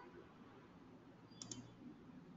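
Computer mouse button clicked twice in quick succession about one and a half seconds in, against near-silent room tone.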